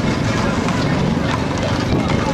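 Hooves of Camargue horses striking a tarmac road as a troop of riders approaches, mixed with the voices of people talking nearby.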